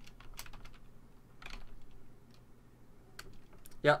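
Computer keyboard keystrokes, a few clicks scattered unevenly with gaps between them.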